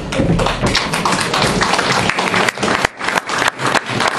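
Audience applauding: many hands clapping irregularly, briefly thinning a little before three seconds in.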